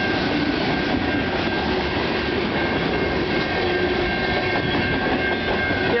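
Freight train cars rolling past at close range: a steady rumble and rattle of wheels on rail, with a thin, steady high tone running through it.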